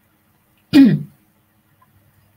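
A woman's single short throat-clear, falling in pitch, about three quarters of a second in.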